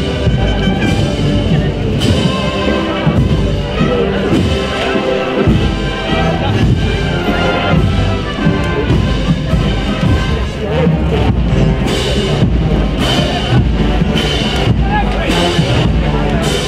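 A Spanish wind band (banda de musica) of brass, woodwinds and drums playing a processional march, with drum beats about twice a second standing out in the second half. Crowd voices chatter underneath.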